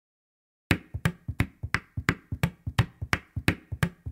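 Song intro on programmed drums alone: after a short silence, sharp snappy percussion hits start about two-thirds of a second in and keep an even beat of about three a second, with lighter hits between.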